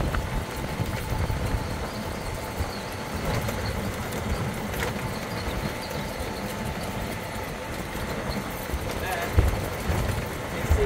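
A golf cart rolling over paving stones, heard from its rear seat: a steady rumble of tyres and cart with wind buffeting the microphone.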